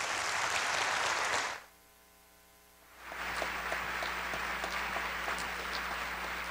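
Audience applauding. The applause drops out abruptly about a second and a half in, then resumes about three seconds in, with single claps standing out.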